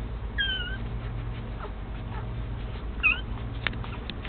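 Newborn puppies suckling, one giving a high thin squeak about half a second in and a shorter squeak just after three seconds, with faint clicks in between.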